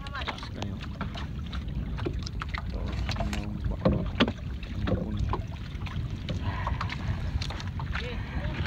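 A steady low rumble, with faint voices in the background and two sharp knocks about four seconds in.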